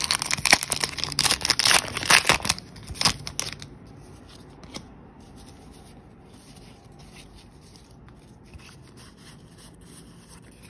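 Foil booster pack wrapper crinkling as it is torn open by hand: a dense run of crinkles that stops about three and a half seconds in, leaving quiet room tone.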